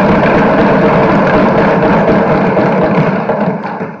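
Many legislators thumping their wooden desks in approval, a dense, steady pounding that fades out near the end.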